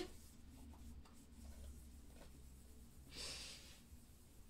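Near silence with a faint low hum. About three seconds in there is one brief, soft swish of tarot cards being handled against each other.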